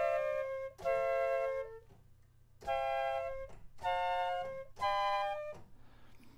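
A recorded flute sample played back at different pitches from a software sampler through a MIDI keyboard: a note ringing on ends just after the start, then come four short notes of under a second each, with a pause near two seconds in. The sampler is in single-shot mode, so each note plays the whole short sample and stops.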